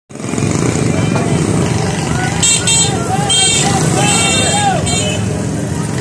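Busy market street: the steady low running of nearby motorcycle and auto-rickshaw engines, with people's voices calling out over it from about two and a half to five seconds in.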